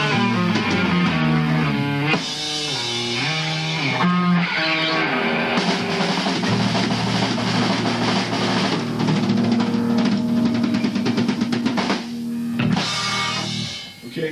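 Recorded rock music, a band playing guitar and drum kit, without vocals, with a brief drop in level near the end.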